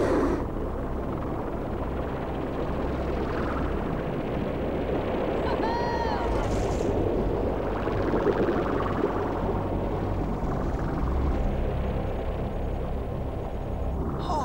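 Cartoon underwater sound effects: a steady low rumble of small submersible craft diving, with bubbling, and a short burble of arching tones about six seconds in.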